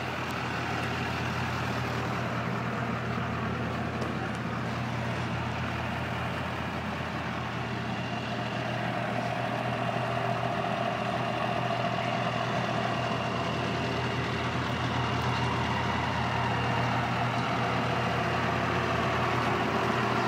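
Chevrolet LB7 Duramax 6.6-litre turbodiesel V8 idling steadily, a low even hum that grows slightly louder in the second half.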